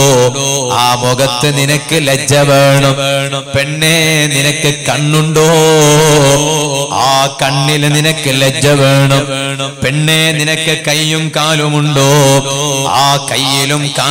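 A man's voice chanting in a melodic, sung style, with wavering held notes and hardly a pause.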